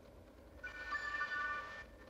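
Samsung Galaxy J7 playing its short power-off chime through the phone's small speaker: a few bright notes come in one after another and hold together for about a second, then stop.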